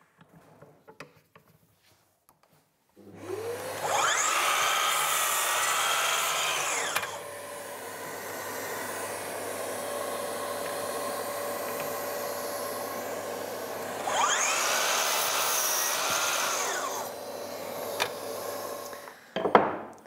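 Festool sliding mitre saw started twice: each time the motor winds up and the blade cuts through a wooden board at 45 degrees, about 3 s in and again about 14 s in. A steady lower drone runs on between and after the cuts, and everything stops shortly before the end.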